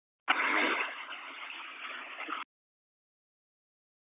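A police two-way radio transmission picked up on a scanner: about two seconds of narrow-band static with no clear words, switched on and off abruptly as the squelch opens and closes.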